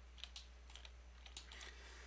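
Faint computer keyboard keys being pressed, a handful of scattered light clicks, over a steady low hum.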